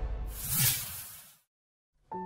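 A whoosh sound effect from a TV channel's logo ident, swelling to a peak about half a second in and fading out within about a second and a half, then dead silence.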